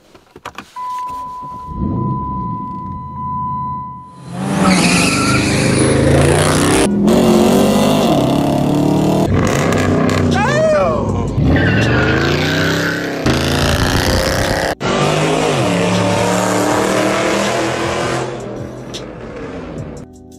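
Dodge Challenger SRT8's V8 engine. It starts and idles under a steady beep for the first few seconds, then runs through a string of short, abruptly cut clips of it revving hard.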